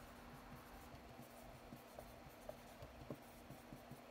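Faint strokes of a dry-erase marker on a whiteboard as words are written: a few soft ticks and scratches over a low steady hum.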